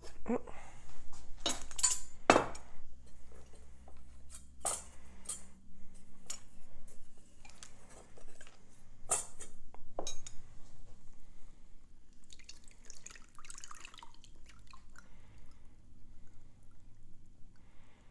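Ceramic slow-cooker insert, glass jar and metal canning funnel clinking and knocking as they are handled and set down, with a stretch of soft rustling. Near the end, herb-infused oil starts to pour and drip through a cloth strainer bag.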